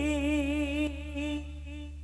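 A male singer holds a long final note with vibrato at the end of a dangdut song, fading out about a second and a half in. Only a low steady hum is left after it.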